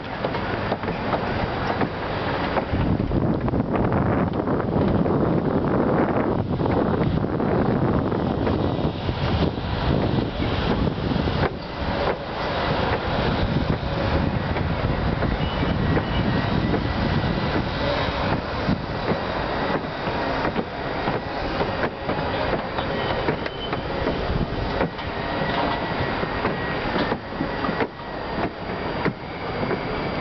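Wind buffeting the camera microphone high up on an open tower: a loud, steady, rumbling rush whose loudness keeps wavering.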